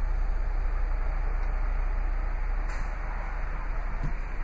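Steady rushing hiss with a constant deep rumble underneath, heard inside a car's cabin, easing a little near the end.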